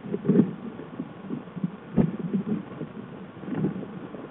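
Black bear cub clambering among dry branches and brush, heard as irregular low rustles and thumps, with a sharper knock about halfway.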